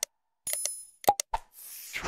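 Subscribe-animation sound effects: a short bell ding about half a second in, a few sharp click sounds around a second in, then a whoosh near the end.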